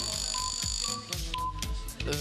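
Electronic background music with a steady pulsing beat. A high steady electronic tone sounds over it and cuts off about a second in, with a few short beeps after.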